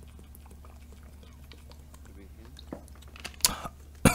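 A quiet stretch: a steady low hum with scattered faint clicks, and one sharper click about three and a half seconds in.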